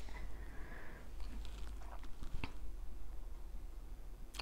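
Faint handling sounds of beading: thread being drawn through Miyuki seed beads on a gold hoop earring, with a single small click about two and a half seconds in.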